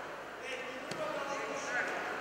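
Indistinct voices in a large gym hall, with a single sharp knock about a second in.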